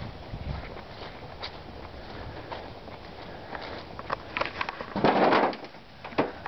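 Footsteps through dry grass and dead leaves, with irregular crunches and the camera being jostled. A louder brief rustle about five seconds in.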